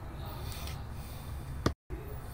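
A pause in a man's talk: faint room noise and his breathing. Near the end comes a single sharp click, followed by a split second of total silence, a dropout in the recording.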